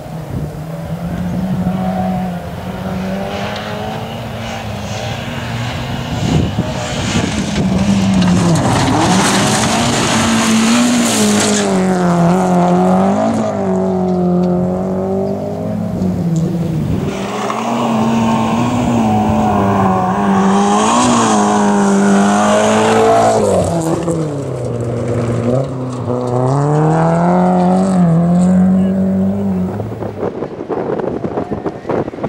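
Rally car engine at hard throttle on a gravel stage, growing louder from about eight seconds in. Its pitch climbs and drops again and again through gear changes and lifts for the corners.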